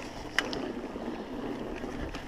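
Mountain bike tyres rolling over a wooden plank boardwalk, a continuous rattling rumble from the boards, with a sharp knock about half a second in.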